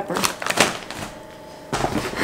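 A plastic chip bag crinkling as it is handled, with quick crackly rustles. Near the end comes a denser rustle as a hand rummages in a paper grocery bag.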